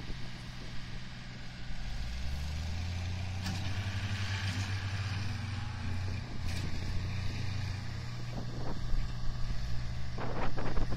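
A tractor's diesel engine working hard, a deep steady drone that swells about two seconds in and eases back around eight seconds.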